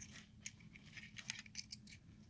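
Faint, scattered clicks and light scraping as a brake master cylinder's piston and rubber seals are pushed by hand into its metal bore.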